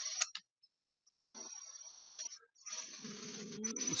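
Hissy, broken audio over a video call that cuts in and out, with about a second of dropout near the start and a low drone building in the last second. The presenter calls it bad sound and feedback.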